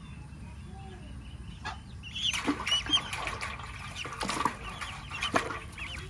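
Muscovy ducklings peeping, faint at first, then a busy chorus of high, short calls from about two seconds in.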